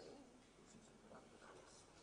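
Near silence: faint room tone with light rustling and handling noises.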